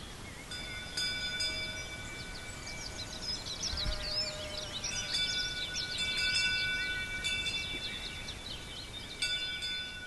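A chime struck three times, about four seconds apart, each strike ringing on with several steady tones, over continuous birdsong.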